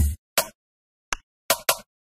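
Sparse, chopped electronic music: a few short, hard-cut sound bites separated by dead silence, the first with a deep low thump, the rest near the middle and toward the end.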